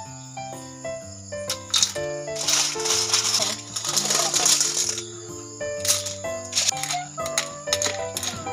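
Background music plays throughout. About two seconds in, a second-and-a-half-long clatter of suso snail shells tipped from a metal bowl into a wok of boiling coconut milk.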